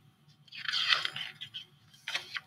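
Paper rustle from the pages of a picture book being handled and turned: one short crackling burst about half a second in, lasting under a second.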